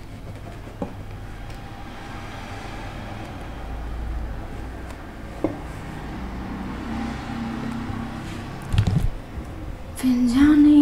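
Quiet handling of muslin and pins on a dress form: a few faint clicks and a short soft thump near the end, over a steady low background hum.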